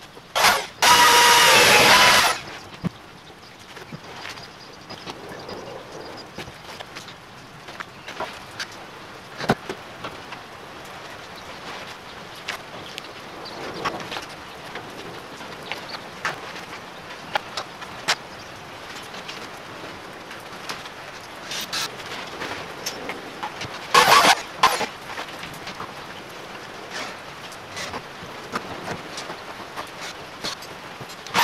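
Power drill running in two short bursts of about a second and a half each, one about a second in and one near the end, with scattered knocks and clicks of hand work in between.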